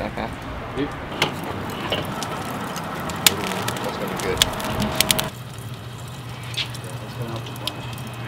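Lump charcoal fire crackling, with sharp scattered pops and snaps over a steady hiss. About five seconds in the sound changes suddenly to a quieter low hum with only occasional ticks.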